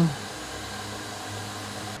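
Toyota electric reach truck's hydraulics and motor running with a steady whir as the forks are lowered.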